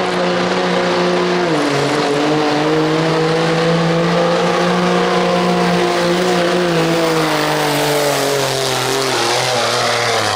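Diesel pickup truck engine running flat out under load while pulling a weight sled, its pitch held high. It dips sharply about one and a half seconds in, then slowly sags toward the end as the pull bogs down.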